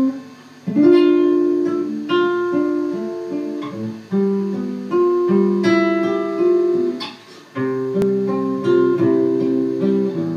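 Classical nylon-string acoustic guitar playing a slow solo introduction. Plucked chords ring out and fade, with a short pause about half a second in and another past the middle.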